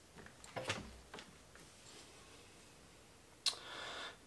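A few light metallic clicks and taps as a small boring-bar cutter bit and its pin-like setting tool are handled, with one sharper click near the end.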